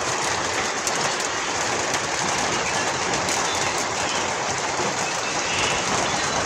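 Heavy rain falling steadily, an even, dense hiss that holds at the same level throughout.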